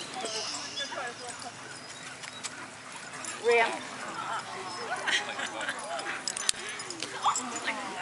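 Weimaraner dogs giving short high whimpers and yips, the loudest a brief rising cry about three and a half seconds in, over people talking quietly in the background.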